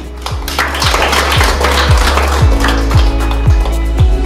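Background music with a steady deep beat, and a group of people clapping from about half a second in.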